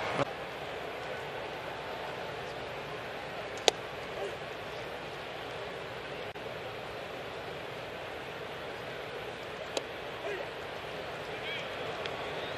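Steady murmur of a ballpark crowd, with a sharp pop a little under four seconds in and a fainter one near ten seconds: pitched fastballs smacking into the catcher's leather mitt.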